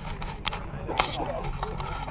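Indistinct chatter of men's voices talking among themselves over a steady low rumble, with two sharp clicks about half a second and a second in.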